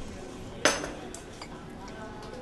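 A small ceramic coffee cup set down on its saucer: one sharp clink about two-thirds of a second in, with a short ring after it.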